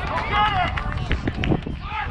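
Indistinct talking of people nearby, over a low steady rumble.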